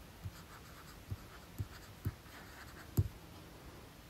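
Kindle Scribe stylus writing on the e-ink screen: a faint scratching of the pen tip across the screen, broken by five light taps of the tip, the loudest about three seconds in.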